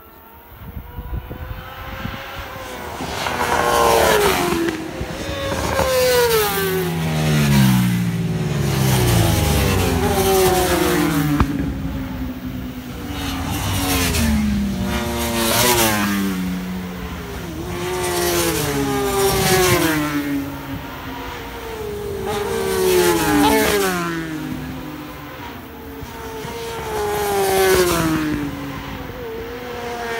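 Superbike racing motorcycles at speed passing one after another, engine pitch rising and falling as each goes by, loudest every few seconds. It starts faint and builds about two seconds in.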